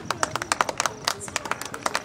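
A small group clapping: many quick, uneven claps.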